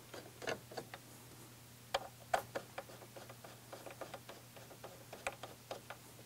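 A 4 mm Allen key tightening button-head bolts into a metal mount clamp: faint, irregular metallic clicks and ticks as the key turns and is reset, with a few sharper clicks about two seconds in and again just past five seconds.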